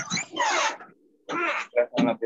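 Indistinct voices coming through a video call, with a short pause about a second in.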